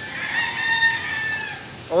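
Rooster crowing: one long crow of about a second and a half that swells in, holds and sags slightly at the end.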